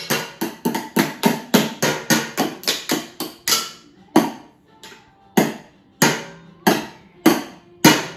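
A child drumming with thin wooden sticks on upturned plastic bowls and metal kitchen tins: a quick run of sharp hits, about four or five a second, breaks off about halfway through, then resumes as slower single strikes.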